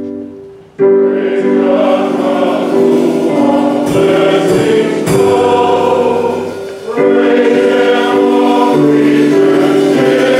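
A church choir singing a gospel hymn over sustained keyboard chords. The voices come in about a second in, after the previous keyboard chord has faded, and pause briefly near seven seconds before going on.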